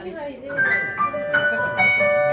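Keyboard starting a song's intro about half a second in, with a few sustained notes struck one after another and left ringing.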